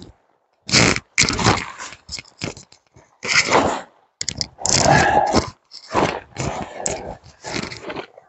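Fabric hammock tarp rustling and crinkling in irregular bursts as it is pulled and draped over a ridgeline.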